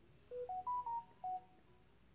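A short electronic tune of about five clear beeping notes, climbing in pitch and then dropping back, lasting about a second.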